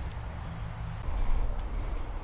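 Rubbing and low rumbling noise on a GoPro's microphone as the camera is handled and moved, louder in the second half, with a small click near the end.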